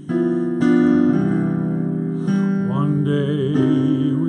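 Solo piano interlude in a slow jazz ballad, played on a digital keyboard. A series of sustained chords is struck, three in the first second or so and another a little past the middle, each left ringing.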